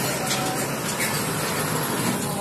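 Road traffic noise: a steady rush with a faint engine hum underneath.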